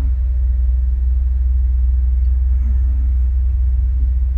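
Steady low rumble of a city bus standing with its engine idling, heard from the driver's seat inside the cabin.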